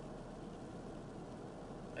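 Steady, faint hum and hiss of a parked car's cabin, with no distinct events.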